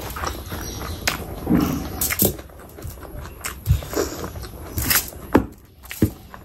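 Close-miked wet squelches and sticky clicks from a bare hand squeezing a lime over rice and then mixing the rice with oily curry.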